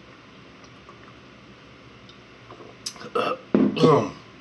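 A man burps near the end after a swig of malt liquor from the bottle, with a short breath sound just before it. Before that there are about three quiet seconds.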